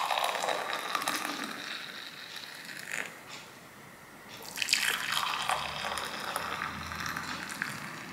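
Hot chocolate being poured from a metal saucepan into glass mugs. It pours in two stretches, with a short pause a little past halfway as the pour moves from one mug to the other.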